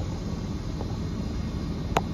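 Steady low outdoor rumble with one sharp click just before the end.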